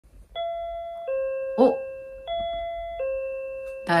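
Home video intercom door chime playing its two-note high-then-low ding-dong twice, signalling a caller at the entrance. A single short, loud sound cuts in about one and a half seconds in.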